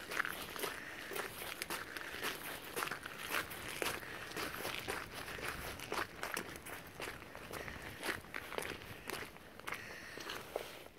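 Footsteps on a wet shingle and sand shore at a steady walking pace, about two steps a second.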